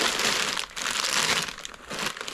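Plastic bag crinkling and clothes rustling as hands rummage through a fabric bin, in two stretches with a short break a little before the middle.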